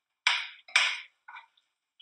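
A metal spoon knocking against a skillet of pasta and sauce: two sharp clacks about half a second apart, then a fainter one.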